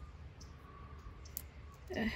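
A few faint clicks as a small round magnet is handled against bug screen mesh, over a steady low hum.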